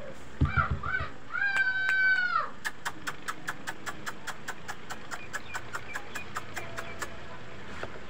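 A palm squirrel calling: a drawn-out, meow-like call, then a long, even run of sharp chirps, about four a second.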